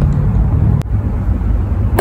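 Low outdoor background rumble with a faint steady hum that stops at a single brief click a little under a second in.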